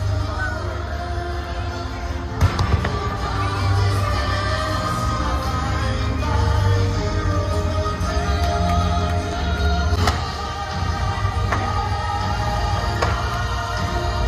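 Orchestral-style soundtrack of a nighttime fireworks show playing loudly over outdoor speakers, with a steady bass. Several firework bangs cut through the music, the sharpest about two and a half seconds in and more in the last few seconds.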